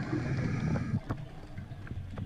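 Muffled underwater sound from a diver's camera: a low rumble that fades about a second in, with a few faint clicks.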